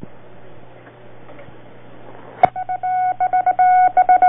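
Old radio broadcast recording with steady hiss and a low hum. About two and a half seconds in comes a click, then a single-pitched beeping tone keyed on and off in short and long pulses, like Morse code, as the news bulletin's opening signal.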